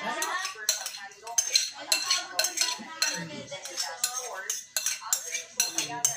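A utensil scraping and tapping against the inside of a plastic mixing bowl in repeated quick, irregular strokes, a few each second, as a thick, creamy ice-cream mixture is scraped out into a plastic tub.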